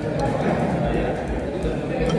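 Indistinct voices talking in the background, with no words clear enough to make out.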